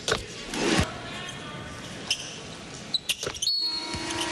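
Arena crowd noise with several sharp knocks of a basketball bouncing on the hardwood court after a free throw.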